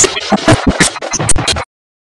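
A fight song played with a run of loud, sharp drum strikes over the band. It cuts off suddenly about a second and a half in.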